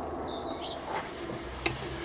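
Quiet background with a faint bird call of short high glides in the first half second, and a single light click about one and a half seconds in.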